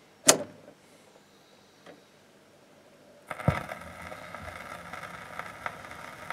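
A sharp click, then a few seconds of quiet before a turntable's stylus is set down on a spinning record: a soft thump, then steady surface hiss and crackle from the lead-in groove before the music begins.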